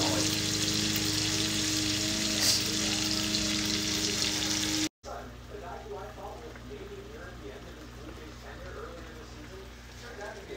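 Ham steaks frying in a skillet with a steady sizzling hiss. About halfway through, the sound cuts out briefly and returns noticeably quieter, with faint talk in the background.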